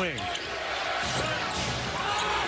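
Basketball being dribbled on a hardwood court, short irregular bounces over the steady noise of an arena crowd.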